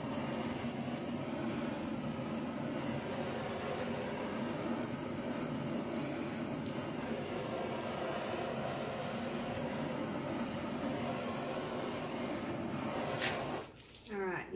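Handheld gas torch burning with a steady hiss as it is passed over wet acrylic paint to bring up cells; it shuts off suddenly near the end.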